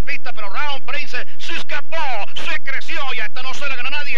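Speech only: a race caller talking rapidly in Spanish, calling the finish of a horse race.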